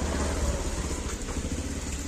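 Low, steady rumble of a motor vehicle engine running, a little louder in the first second.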